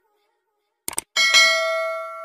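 Subscribe-button animation sound effect: a quick pair of mouse clicks about a second in, then a bell ding struck twice in quick succession that rings on and slowly fades.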